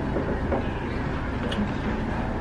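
Steady low rumble of background noise, with a couple of faint crunches from a lotus root chip being chewed.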